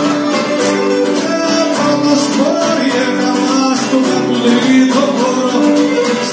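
Live Cretan folk music: a bowed Cretan lyra plays the melody over two strummed laouta and an acoustic guitar.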